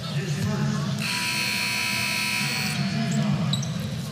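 Arena horn sounding one steady blast of just under two seconds, starting about a second in, over a constant crowd murmur in the basketball arena.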